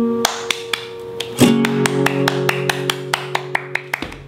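Acoustic guitar chords, strummed once about a second and a half in and left ringing, with a quick run of sharp hand claps about four a second over them.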